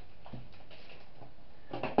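Packaging being handled on a table: a soft knock about a third of a second in, then a sharp tap at the very end as a metal biscuit tin is set down.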